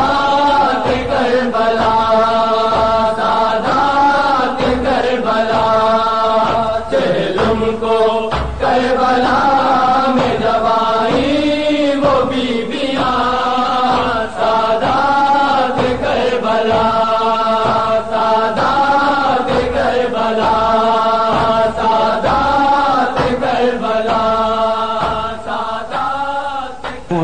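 A noha, a Shia lament in Urdu, chanted with long, wavering held notes, over a steady rhythmic beat.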